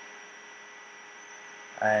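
Faint steady hiss with electrical hum and thin, steady high-pitched whines: the background noise of the recording setup. A man's voice starts just before the end.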